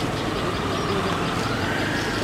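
A steady low mechanical rumble, like an idling engine, under a constant background hiss.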